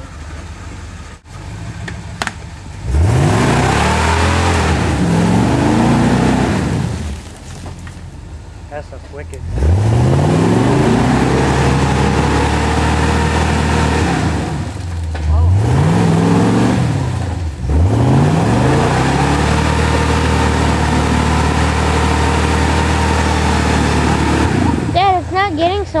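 Jeep Wrangler YJ's engine revving hard as it pushes through deep mud: four times the revs climb quickly, hold high for several seconds and then fall away, the last and longest hold running some seven seconds.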